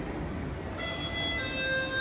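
An electronic chime of several clear, bell-like tones that come in one after another about a second in and ring on steadily, over the low murmur of a busy indoor space.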